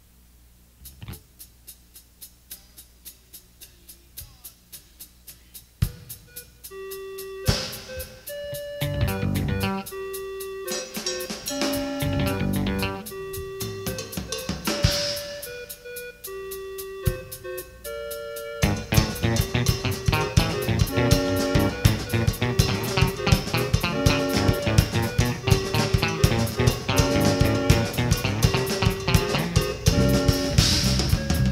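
Live instrumental intro by a bass, drums and keyboard band. Drums tick out a quiet, steady pulse, then keyboard and bass notes join about six seconds in, and the full band comes in loud about eighteen seconds in.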